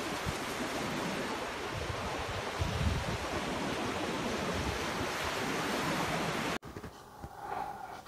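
Surf washing onto a sandy beach: a steady rush of small waves that cuts off suddenly about six and a half seconds in.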